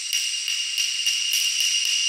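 A bright, high-pitched shimmering chime sound effect, held steady with a fast, even flutter of about four pulses a second.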